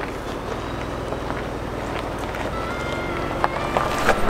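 Ford Bronco engine running low and steady as the truck crawls slowly over rock, with a few faint clicks.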